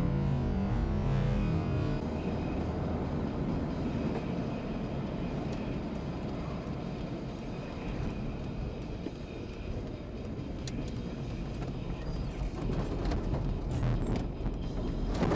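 Cabin road and engine noise of a car driving, a steady low rumble picked up by a dashcam microphone. Background music plays during the first two seconds, and a few short clicks come near the end as the car slows.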